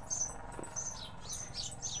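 Small birds chirping: high, short, downward-sliding calls, several a second and overlapping.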